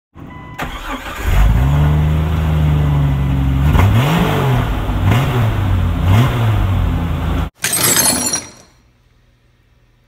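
A car engine running, then revved up and back down three times in quick succession before it cuts off sharply. A short hissing burst follows and fades away.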